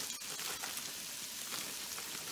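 Sliced cabbage frying in bacon grease in a skillet: a steady, quiet sizzle with faint scattered crackles.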